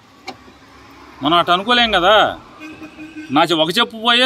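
A man speaking in short phrases after a brief pause, with a vehicle heard in the background.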